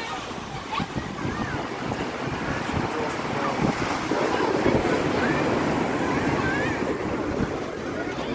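Sea surf breaking and washing up a sandy beach in a steady wash of noise, with wind buffeting the phone's microphone.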